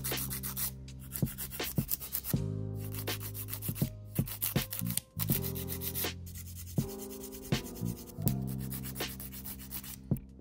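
Emery board filing fingernails in repeated short strokes, shaping long, curled nail tips square.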